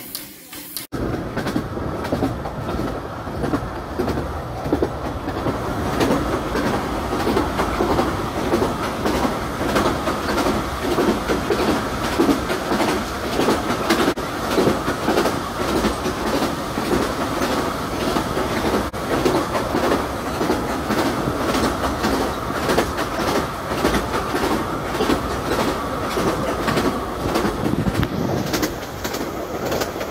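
A 15-inch gauge Bure Valley Railway steam-hauled train running, heard from aboard a carriage: steady running noise with a constant run of small wheel clicks on the track. It starts suddenly about a second in.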